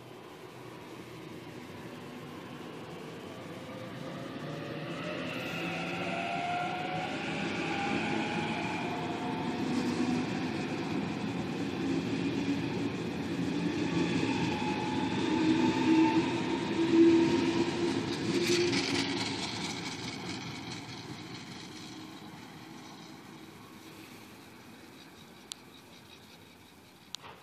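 A Sydney Trains Waratah (A set) double-deck electric train accelerates away from the platform and past the camera. The traction motors whine, rising in pitch, under the building running noise. It is loudest about seventeen seconds in, then fades as the train draws away.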